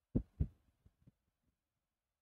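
Two soft taps of a stylus on a tablet screen in quick succession, followed by a few faint ticks, as marks on the digital whiteboard are erased.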